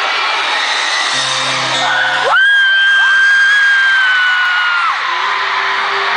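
Arena crowd screaming as the band's intro begins about a second in, heard through a phone's microphone. About two seconds in, one loud high-pitched scream close to the phone glides up and is held for about two and a half seconds before cutting off.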